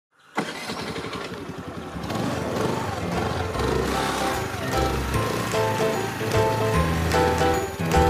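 Motor scooter engine starting suddenly and running, with background music coming in and growing louder over it.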